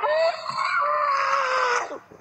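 A woman's long, high-pitched scream into a doorbell camera's microphone: one held cry lasting nearly two seconds, its pitch sagging slightly toward the end before it cuts off.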